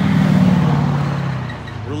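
A motor vehicle passing close by on the road. Its engine and tyre noise swells about half a second in, then fades with a slight drop in pitch.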